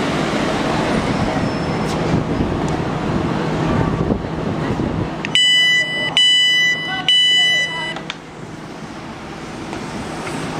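Class 350 electric train rumbling as it slows at the platform, then three loud beeps from its door alarm about five seconds in, as the door Open button is pressed and the doors open.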